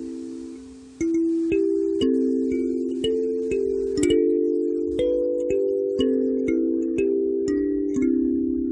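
Kalimba (thumb piano) played by thumb-plucking its metal tines. A chord rings out and fades over the first second, then melody notes and chords follow roughly every half second, each note ringing on under the next.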